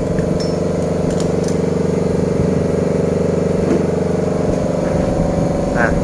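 Steady machine hum, an engine or motor running at constant speed, with a few light clicks about a second in.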